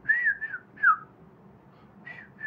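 A man whistling three short notes in quick succession, the last two falling in pitch, imitating a bird's call.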